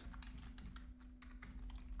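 Typing on a computer keyboard: a rapid run of faint keystroke clicks.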